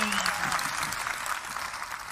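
Audience applause that fades steadily away.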